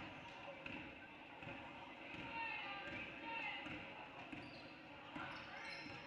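Basketball dribbled on a hardwood gym floor, faint bounces under distant voices and calls in the gym.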